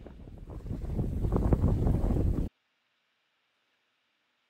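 Wind buffeting the microphone on a Yankee 38 sailboat under sail, with water rushing along the hull. The rumble grows louder, then cuts off suddenly about two and a half seconds in.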